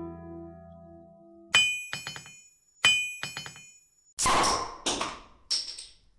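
Plucked-string intro music fading out, then two sharp strikes about a second and a half apart, each ringing briefly with quieter echoing hits after it. Three short noisy bursts follow near the end.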